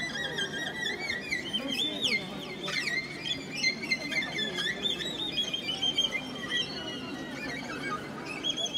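Ukrainian folk instrumental band playing live: a high, ornamented violin melody with quick trills over accordion, cimbalom and drum accompaniment.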